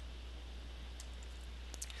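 A few faint, light clicks from small plastic flashlight parts and an LED lead being handled by fingers: one about a second in and a quick pair near the end, over a steady low hum.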